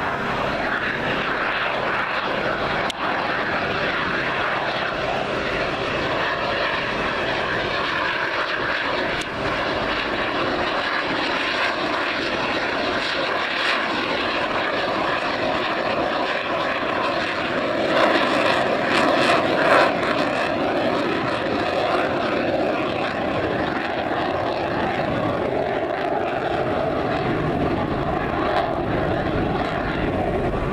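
Jet engine noise from a delta-wing fighter jet flying a display. It is steady and continuous, and loudest for a couple of seconds about eighteen seconds in.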